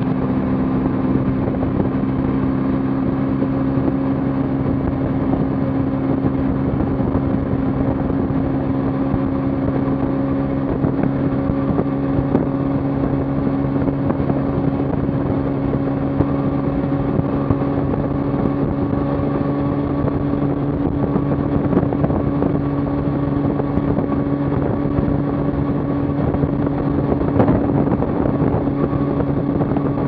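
Kawasaki Ninja 300's parallel-twin engine running at a steady cruising speed, heard from a camera mounted on the bike, with a rush of wind and road noise underneath.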